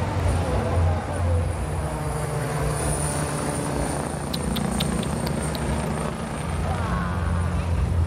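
Military helicopter flying overhead, its rotor beating steadily.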